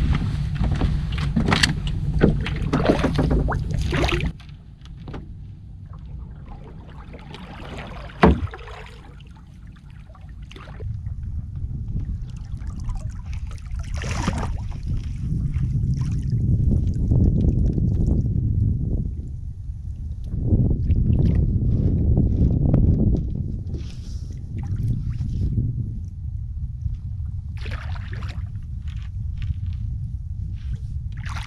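A flats skiff being poled across shallow water: a low, surging rumble of wind and water on the microphone, with small knocks and splashes from the push pole. There is one sharp knock about eight seconds in.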